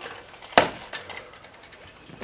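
A single sharp knock about half a second in, as a hard object is set down on a glass display counter.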